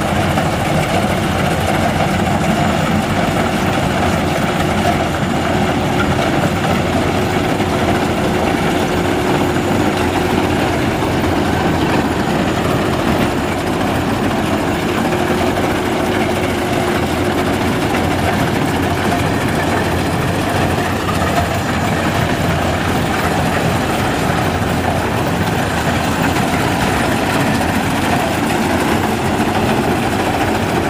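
Maxxi Bimo Xtreme crawler combine harvester running steadily as it cuts and threshes ripe rice: a constant engine-and-machinery drone, with a faint steady whine in the middle.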